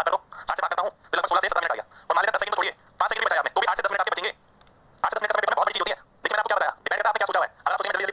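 A man speaking in short phrases with brief pauses between them. The voice sounds somewhat thin, like a phone line.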